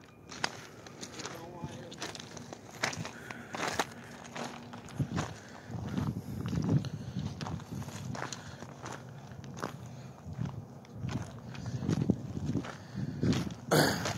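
Footsteps crunching on loose railroad ballast stone, a run of irregular steps.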